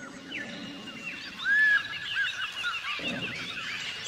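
Birds chirping: many short, overlapping calls that rise and fall in pitch, heard together as a chorus.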